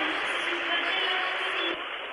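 Arena crowd applauding, with many voices mixed in. The sound drops away near the end.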